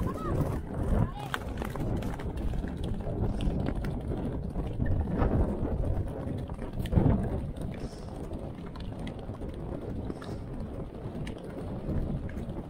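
Pony galloping on turf, heard from a rider-worn action camera: wind buffeting the microphone over the hoofbeats, with a louder thud about seven seconds in as the pony lands over a brush hurdle.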